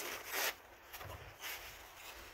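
A brown paper towel rustling as it is handled and pulled away: one short rustle in the first half second, then a couple of fainter rubs of paper.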